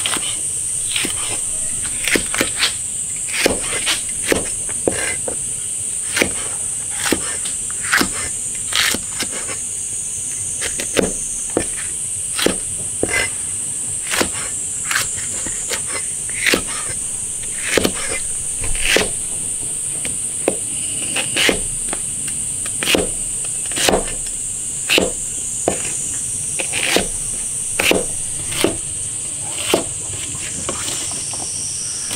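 Cleaver chopping small green chili peppers on a plastic cutting board: single sharp knocks about once a second. A steady high-pitched insect drone runs underneath.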